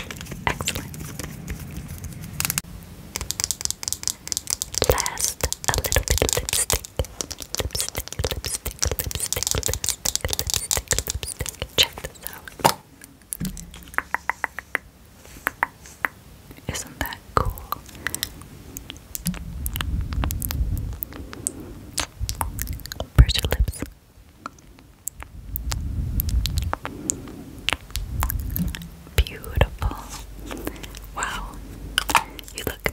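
Long fingernails tapping quickly on plastic makeup packaging: first a yellow mascara tube, later a glossy black lipstick-style crayon. Many rapid, sharp clicks, thickest in the first dozen seconds, then sparser.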